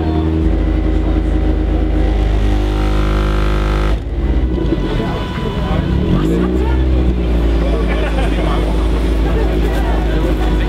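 Loud bass-heavy music from an Opel Corsa C's competition car-audio subwoofer system, with deep sustained bass notes. The music changes abruptly about four seconds in.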